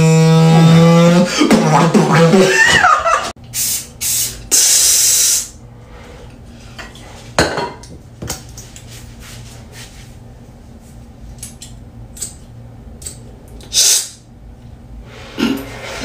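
Vocal beatboxing: a held, buzzing hummed note slides into quick gliding mouth sounds, then sharp hissing bursts follow, then a quieter stretch with a few isolated clicks and one more hiss.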